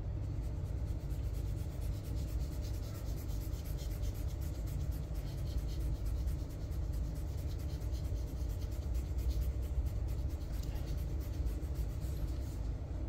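A steady low rumble with faint, irregular scratchy rubbing over it: a crinkled plastic food-colour tube being squeezed and its nozzle worked over the cake's icing.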